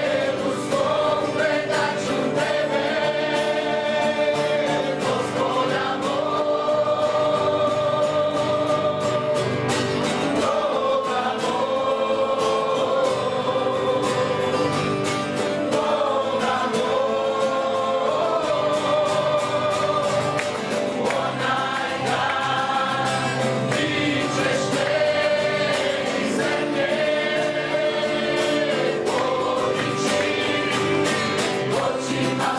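A small worship band performing a hymn live: several men's and women's voices singing together in long held phrases, over strummed acoustic guitars and a keyboard.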